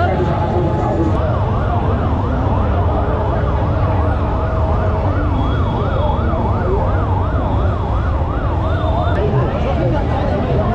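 A fast yelping siren, its pitch sweeping up and down about three times a second, starts about a second in and stops near the end, over steady crowd noise.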